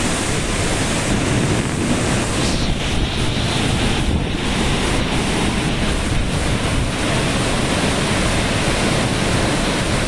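Violent storm: strong wind thrashing trees and heavy rain, heard as a loud, steady rush, with wind buffeting the microphone and adding a low rumble.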